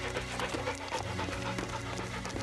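A dog panting rapidly in quick, even breaths as it runs, over background music.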